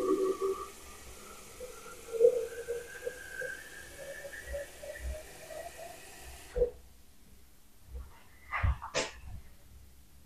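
Tap water running into a tall glass vase at the kitchen sink, with a tone that rises slowly in pitch as the vase fills. The tap is shut off about six and a half seconds in, and a few knocks of the glass being handled follow near the end.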